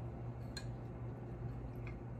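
Ceramic tumbler being handled and tilted, with two faint clicks about a second apart and liquid left inside shifting faintly, over a low steady hum.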